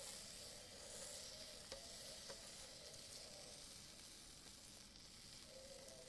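Faint sizzling of a crepe cooking on the hot plate of an electric crepe maker while a metal spatula spreads jam across it, with a couple of light clicks a little under two seconds in and just past two seconds.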